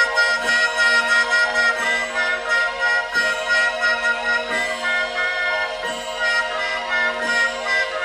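Orchestra playing the introduction to a 1950s popular song recording: held chords over a steady, even beat, about three beats every two seconds.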